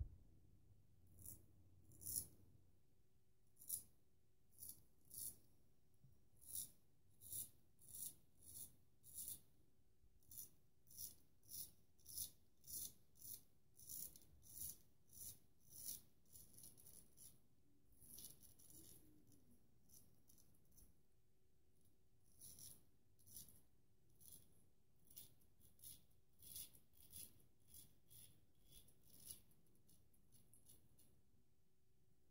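Magnetic Silver Steel 13/16-inch full hollow straight razor scraping through lathered stubble on the neck and chin: dozens of short, quiet strokes, about one or two a second, with a lull of a few seconds past the middle.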